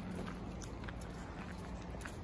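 Quiet city street ambience: a steady low hum of distant traffic, with a few faint ticks.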